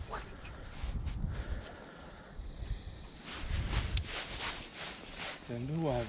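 Quiet outdoor background noise with a few soft handling clicks and rustles; a man's voice starts near the end.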